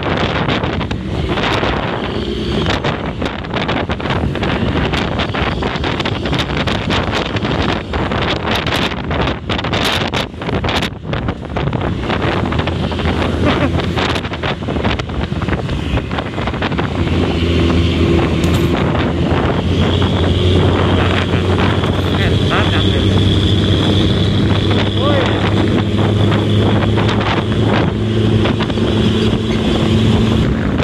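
Hino RG bus's diesel engine heard from close behind on the road, mixed with heavy wind buffeting on the microphone. About halfway through, a steady low engine drone comes through clearly and a little louder, holding to the end.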